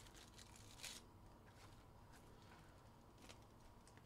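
Near silence: room tone with a faint steady hum and a few faint rustles and clicks, the clearest about a second in.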